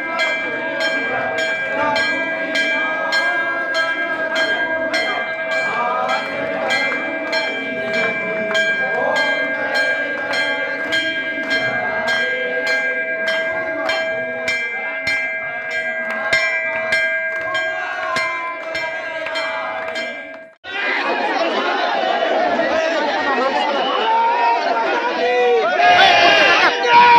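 Temple bell ringing continuously during an aarti, with rhythmic metallic strikes about twice a second over people's voices. About 20 seconds in it cuts off abruptly to a dense outdoor crowd chattering and shouting.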